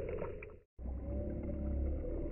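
Spray drops from a skipped rock's splash pattering onto a lake surface, many small ticks, broken off by a brief dropout a little over half a second in. After it comes a low, steady rumble with faint held tones.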